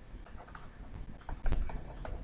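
A stylus tapping and scratching on a tablet while handwriting: a run of light clicks, with one sharper click about a second and a half in.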